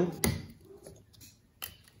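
A few light clicks and taps of cut-open oil filter parts being handled and set down on a table: one sharp click just after the start and another about one and a half seconds in.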